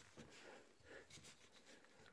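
Near silence: room tone with a few faint light clicks from plastic screw-handle knobs being handled on a foam floor mat.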